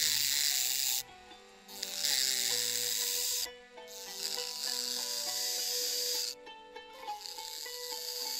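A small electric drill grinding the metal nib of a calligraphy pen, thinning and shaping its tip, in four separate stretches of high rasping hiss, each one to two and a half seconds long. Soft background music with held notes plays underneath.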